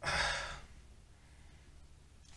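A man sighing once, a breathy exhale lasting about half a second.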